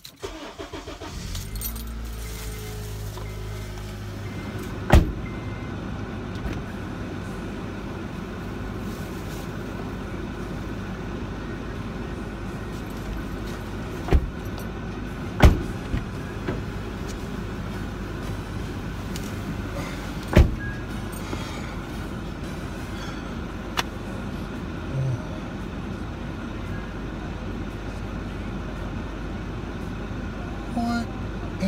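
Car engine cranked and started inside the cabin, its revs falling and settling over the first few seconds into a steady idle. A few sharp knocks cut through the idle, about five seconds in, twice near the middle, and again about twenty seconds in.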